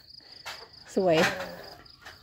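Steady high-pitched insect trill.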